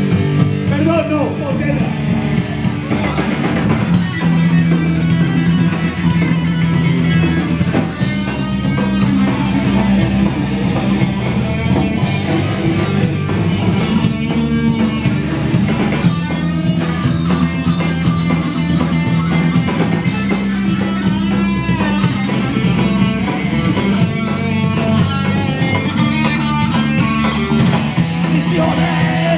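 Punk band playing live and loud: distorted electric guitars, bass and drum kit, with a cymbal crash about every four seconds.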